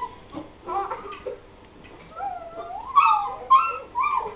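Shiba Inu puppies whining and whimpering, a run of high cries that slide up and down in pitch, loudest about three seconds in.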